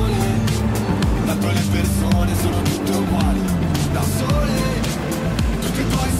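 Music track with a steady beat and vocals, with a car engine passing underneath.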